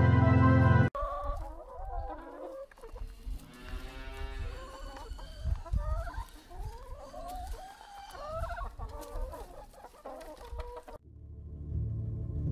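A flock of hens clucking and calling with short, pitch-bending calls. It cuts in abruptly as a music track stops about a second in, and gives way near the end to low droning music.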